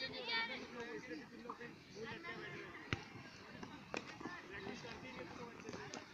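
Children's voices chattering and calling, loudest just at the start and then fainter and more scattered. Two sharp knocks come about three and four seconds in.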